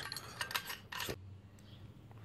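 Aluminium shovel-handle segments being handled, giving a few light metallic clicks and clinks in the first second, then faint rubbing.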